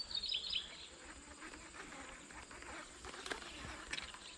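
A bird chirping briefly at the start over a steady high-pitched insect drone, with a few faint clicks near the end.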